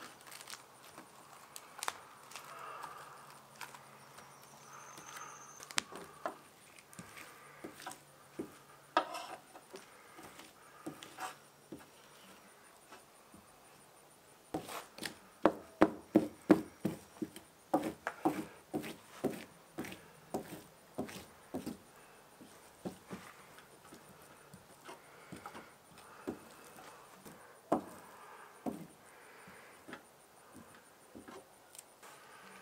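A resin-wet brush stippling fiberglass tabbing onto a plywood panel: a series of short taps, loudest and most regular in a run of about two a second through the middle.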